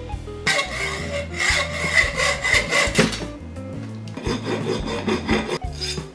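A small metal driveshaft held in a bench vise being cut with a fine hand saw in a run of quick strokes, then, about halfway through, its rough cut end being filed, over background music.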